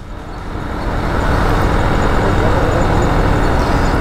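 Motorcycle riding noise of a KTM Duke 200 under way: its single-cylinder engine running with wind and road rush on the chest-mounted mic. It grows louder over the first second, then holds steady.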